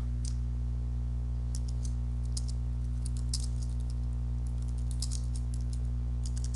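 Computer keyboard typing: irregular runs of keystroke clicks, mostly from about a second and a half in, over a steady low hum.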